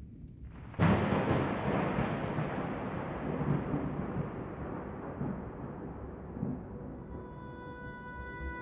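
Intro of an electronic dance track: a sudden loud, noisy boom about a second in that dies away slowly over several seconds. Sustained synth tones fade in near the end.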